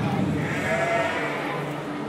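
A sheep bleating once, a single call lasting about a second, over the murmur of a large hall.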